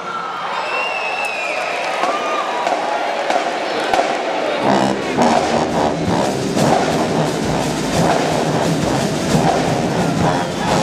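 Gym crowd talking and cheering, with a few whoops, in the break after a marching band stops. About halfway through, a band starts up again with brass and drums.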